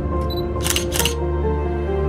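Two quick camera shutter clicks, about a third of a second apart, a little under a second in, over background music.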